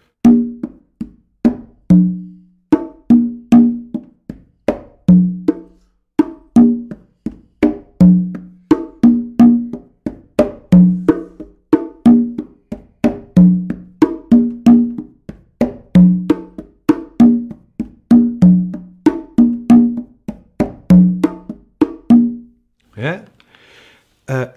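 Congas and bongo played by hand in a samba rhythm: a steady run of light strokes with ringing open tones. The lowest open tone, on the tumba, comes back about every two and a half seconds and is followed by higher open tones on the hembra. The playing stops near the end.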